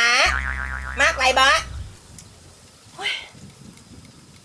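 A comic "boing" sound effect, a steady low pitched tone lasting about a second and a half, played under a shouted line of speech.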